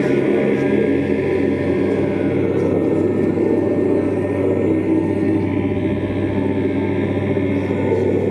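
Live experimental drone metal: a heavily amplified electric guitar holds a steady, sustained drone, with chant-like singing over it.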